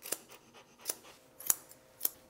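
Grooming scissors snipping through a dog's head hair: three short, sharp snips, a little over half a second apart.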